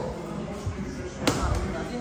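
A single sharp smack of a strike landing on a trainer's hand-held pad, a little over a second in, with voices in the gym behind.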